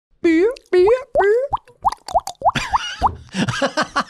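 A person making vocal sound effects with the mouth: three longer pitched calls, then a quick run of about six short rising plops.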